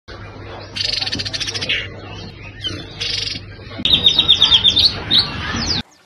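Caged birds singing: a buzzy high trill about a second in, a shorter one near three seconds, then a fast run of repeated high chirps from about four seconds. It stops abruptly just before the end.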